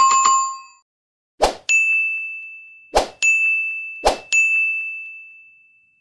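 End-screen sound effects: a short chime, then three times a brief pop followed by a high notification-bell ding that rings on one tone and fades out slowly.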